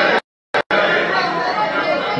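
Murmur of voices in a large chamber, broken near the start by a brief dropout in which the audio cuts out completely, twice.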